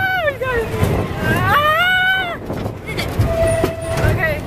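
A young woman shrieking with laughter in long, high squeals that rise and fall, the longest lasting about a second in the middle, over a steady low rumble of the ride she is on.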